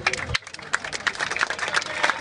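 Scattered hand-clapping from a crowd, thickening into applause after about half a second, with a few voices mixed in.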